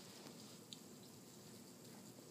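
Near silence: faint room tone, with one soft tick about two-thirds of a second in.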